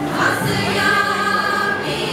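A large church choir singing in long held notes, a new phrase beginning about half a second in.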